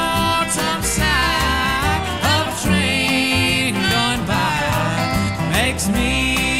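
Country music in a bluegrass style from a studio band recording, a melody line sliding between notes over a steady accompaniment.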